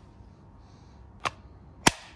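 Two sharp clicks about half a second apart, the second louder: a Ryobi 18V ONE+ lithium battery pack being slid and latched onto a cordless drill.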